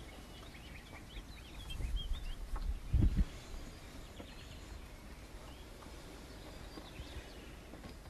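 Small birds chirping in short high calls, mostly in the first couple of seconds, over a quiet outdoor background. A low rumble builds and ends in a thump about three seconds in.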